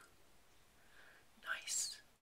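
Near silence, then near the end a short breathy whisper from a person's voice, in two quick puffs.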